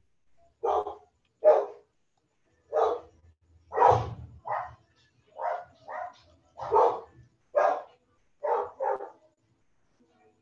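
A dog barking repeatedly, about eleven single barks spaced roughly a second apart.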